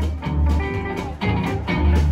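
Live roots band playing with no singing: guitars picking over upright bass and drums, the bass notes strong and pulsing about twice a second.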